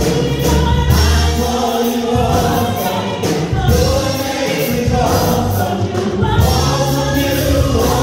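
Small gospel vocal group of men and women singing together into microphones, with instrumental accompaniment carrying a deep bass line.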